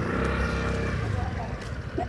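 A motor vehicle's engine running close by in the street, a steady hum that fades after about a second, over general street noise.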